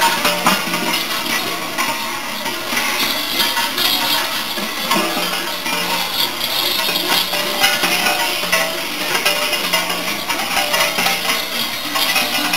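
Many bells worn by Perchten jangling and clanging together in a steady metallic clatter.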